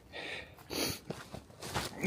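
A hiker on the move: three short, noisy rushes of breath and footfalls on the trail, spread across about two seconds.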